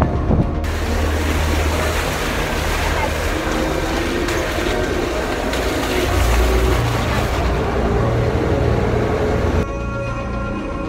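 An SUV driving on a wet, muddy dirt road: the engine rumbles under load while the tyres churn and throw up sprays of mud and water, a dense rushing noise that cuts off suddenly just before the end.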